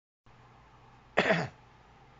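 A man coughing once, a short burst about a second in.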